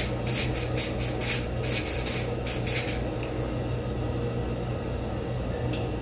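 Ebin Wonder Lace adhesive spray, from an aerosol can, spritzed onto a wig's lace hairline in quick short hisses, about a dozen in the first three seconds and one more near the end. A steady low hum runs underneath.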